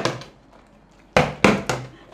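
A partly water-filled plastic bottle knocking against a tabletop: three sharp knocks in quick succession a little past a second in, after a moment of quiet.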